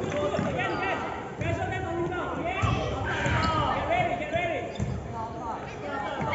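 A basketball bouncing on the court during a youth game, with short high squeaks and voices around it.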